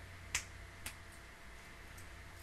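Two sharp clicks about half a second apart, the first louder than the second.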